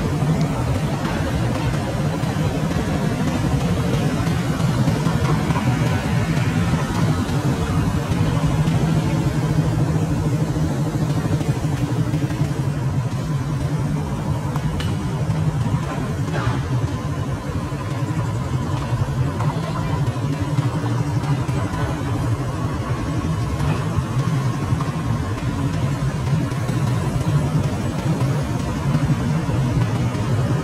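Steady hum of motorbike and car traffic, many small engines running as they pass.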